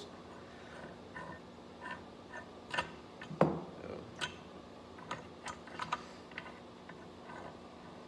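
Scattered light clicks and taps of hand tools and small-engine parts being handled during work to remove a flywheel, with a short spoken "so" about a third of the way in.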